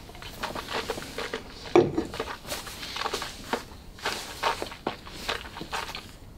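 An irregular run of small clicks, smacks and rustles, the loudest knock about two seconds in: mouth and lip noises after a sip of whisky, and a stemmed nosing glass being handled and set down on a wooden barrel top.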